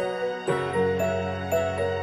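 Background music: a slow melody of held notes moving in steps over a sustained low bass note.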